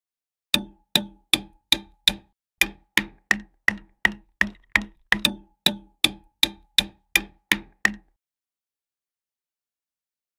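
Hammer tapping plastic wall anchors flush into drilled holes in a wall: about twenty sharp, evenly spaced strikes, roughly three a second, stopping about eight seconds in.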